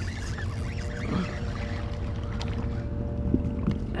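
Fishing reel being cranked steadily as a small channel catfish is reeled in to a kayak, with faint splashing and water sounds against the hull.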